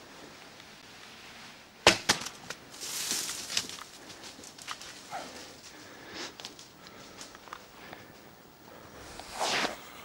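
A sharp crack about two seconds in, then rustling and scattered snaps in dry leaves and brush as the arrow-hit whitetail doe bolts away. Near the end comes a loud, breathy exhale from a hunter.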